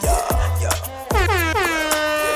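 Dancehall mix music with a steady beat. About a second in, a DJ air-horn effect sweeps down in pitch and then holds one note.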